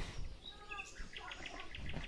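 Faint bird chirps and twittering, with a quick run of short high ticks about a second in.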